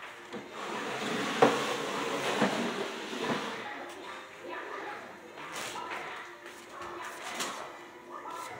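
Rustling and handling noise with a sharp knock about a second and a half in, two weaker knocks after it, and a few light clicks later on.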